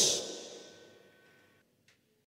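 The final cymbal crash of a heavy rock song ringing out and fading to near silence within about a second.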